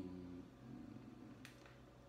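Near silence: room tone with a faint steady low hum and a single faint click about one and a half seconds in.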